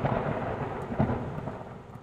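Thunder sound effect rolling and fading away, with a second rumble about a second in.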